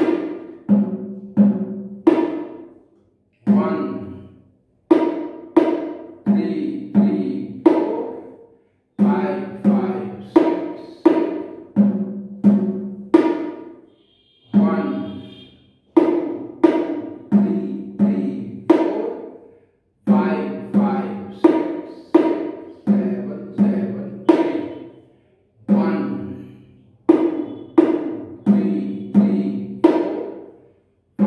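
A pair of bongo drums played with bare hands, the two heads sounding at a low and a higher pitch. The player repeats an eight-beat pattern in which the first, fourth and eighth beats are single strokes and the rest are doubled. A short pause falls between repetitions about every five to six seconds.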